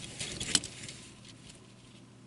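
Small plastic transforming toy trucks handled and set down: light plastic clicks and scratchy rustling, with one sharper click about half a second in, then dying away to quiet.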